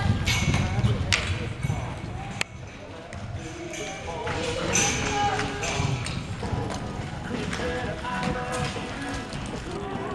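Voices talking in a large indoor arena with some music, over the dull thuds of a horse galloping on soft dirt. The low thudding is strongest in the first couple of seconds.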